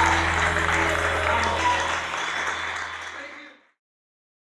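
Audience applauding and chattering over backing music with a held low note, all fading out to silence about three and a half seconds in.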